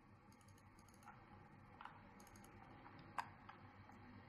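A few faint, isolated clicks of a computer mouse and keyboard over near silence. The loudest comes a little after three seconds in.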